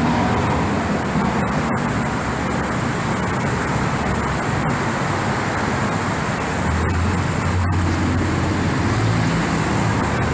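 Steady, loud city street traffic noise from passing cars and other motor vehicles, with a low engine drone joining from about seven seconds in.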